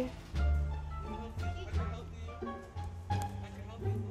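Background music: held pitched notes over a deep bass line that changes note every half second or so.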